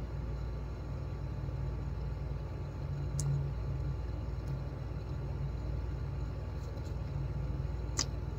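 Steady low background hum in a small room, with a few faint soft ticks in the middle and near the end.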